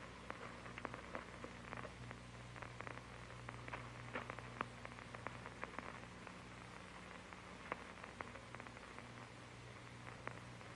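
Faint surface noise of an old film soundtrack: a steady hiss and low hum, with scattered crackles and pops throughout.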